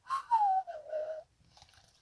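A person whistles a single note that glides downward in pitch over about a second.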